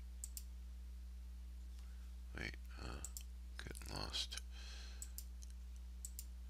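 Faint, irregular computer mouse clicks, a handful over a few seconds, over a steady low electrical hum.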